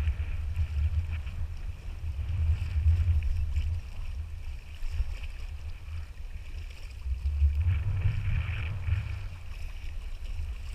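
Wind buffeting an action camera's microphone in gusts, with water sloshing and splashing around the legs of people wading through shallow sea.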